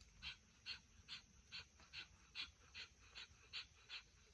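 A dog panting faintly, about two and a half quick, even breaths a second.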